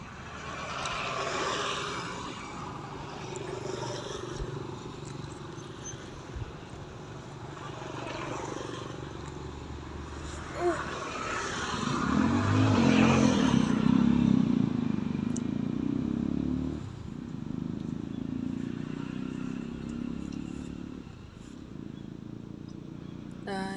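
A motor vehicle engine running nearby, swelling to its loudest about twelve seconds in and easing off after about seventeen seconds, over steady outdoor background noise.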